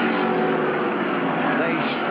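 NASCAR Winston Cup stock cars' V8 engines howling at racing speed as the pack goes by, several engine notes overlapping in a steady, slightly falling drone.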